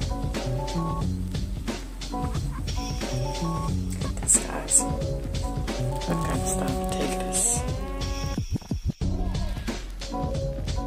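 Background music with a steady beat and bass line; near the end the notes glide upward and the track briefly cuts out before the beat resumes.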